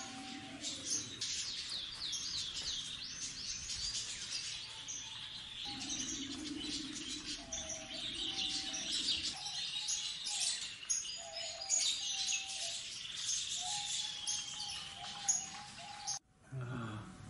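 Many small birds chirping densely and continuously, with a lower short call repeating every second or two.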